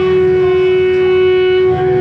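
Live punk band playing: one long held note, steady in pitch, over a pulsing bass and drum beat.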